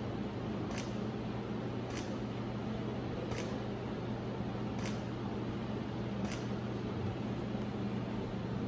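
Camera shutter firing about six times, one short click roughly every second and a half, over a steady low hum.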